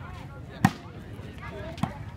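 Two sharp slaps of a hand striking a volleyball, a little over a second apart, the first being the serve and the louder of the two. Faint crowd chatter runs underneath.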